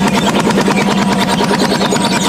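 Old tractor's engine running with a rapid, even pulsing beat as it pulls a plough on steel spade-lug wheels.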